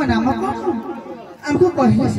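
Only speech: a performer's voice amplified through a hand microphone, with a brief pause about one and a half seconds in.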